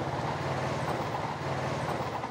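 Motor scooter engine running at a steady speed while riding, a low even hum with a fast, regular putter.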